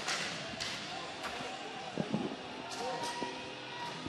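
Skateboard clacks and knocks from boards hitting the ramps and deck, coming every half second to a second, over background voices.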